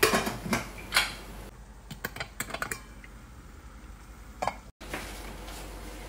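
Kitchen pots and utensils clinking and knocking: a few sharp knocks in the first second, then lighter clicks, as the rice is set up for steaming.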